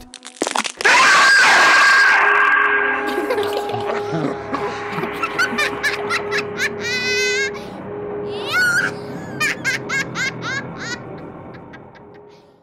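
Horror music and sound effects. A loud harsh burst comes about a second in, then a steady low drone runs under short, wavering voice-like cries. It fades out near the end.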